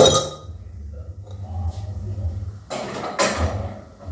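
Kitchen clatter: a sharp clink of utensils or dishes at the very start, the loudest sound, then a rougher clattering rustle about three seconds in, over a low steady hum.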